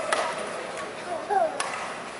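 Sharp cracks of badminton rackets striking a shuttlecock, two about a second and a half apart, with short squeaky glides between them, echoing in a large sports hall.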